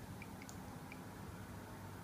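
Faint, high-pitched ticks from an Arduino-driven piezo buzzer giving turn-signal feedback while the right indicator blinks, over quiet room tone.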